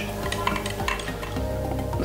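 A plastic pH pen stirred in a small glass of mash sample, its tip clicking lightly against the glass a few times in the first second, over quiet background music.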